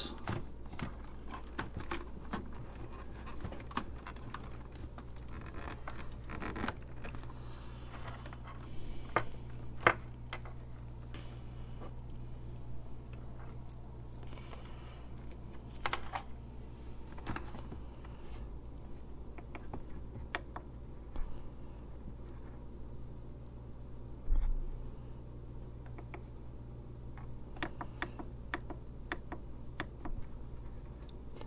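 Scattered clicks, taps and scrapes of hands handling equipment and leads on a wooden workbench, with a louder thump about 24 seconds in, over a steady low hum.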